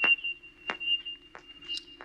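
Motion-tracker sound effect: sharp pings about every two-thirds of a second over a steady high electronic tone and a low hum, signalling moving contacts closing to within about eight meters.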